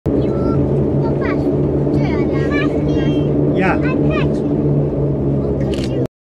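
A 4x4 vehicle's engine and drivetrain running steadily as it drives, heard from inside the cabin as a loud, even drone. Children's voices rise and fall over it.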